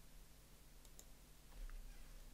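Near silence with a few faint clicks of a computer mouse.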